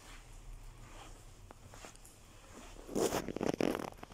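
A brief rasping rustle about three seconds in, lasting about a second, much louder than the faint room tone and light ticks before it.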